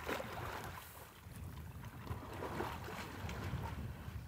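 A horse wading through belly-deep pond water, the water sloshing and splashing faintly around its legs.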